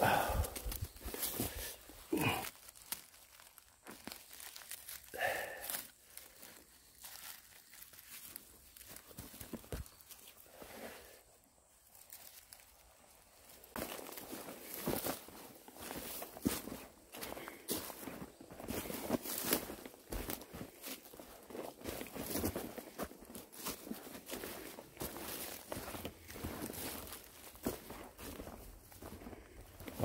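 Footsteps crunching and rustling through dry fallen leaves and pine needles on a steep forest slope, with brushing of undergrowth. A few short breaths or grunts from the walker come in the first six seconds.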